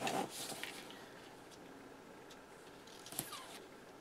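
Faint paper handling: hands rustling and pressing a thin sticker strip onto a planner page, with one brief sharper rustle and squeak about three seconds in.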